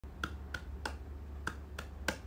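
Five sharp finger snaps, about a third of a second apart with a longer pause before the fourth, over a steady low hum.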